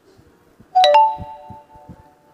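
Electronic two-note doorbell-style chime, a ding-dong. It sounds about three-quarters of a second in, and the second note rings on and fades over about a second.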